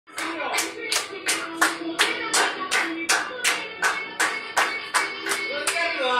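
A song's opening: steady handclaps, nearly three a second, over music with a sung voice.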